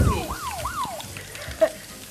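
Electronic warning siren in a cooking-show studio, signalling that the cooking time is almost up: a quick falling wail that repeats about three times a second and stops about a second in. A low thump comes right at the start.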